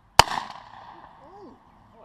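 A single sharp shot from a hand-held golf-ball gun, its report dying away over about a second.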